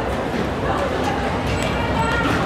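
Several voices yelping and whooping in short, gliding calls over a noisy large hall, with a few sharp knocks.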